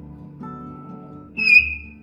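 Chalk squeaking on a blackboard: a sudden high-pitched squeal about one and a half seconds in, lasting about half a second, over soft background guitar music.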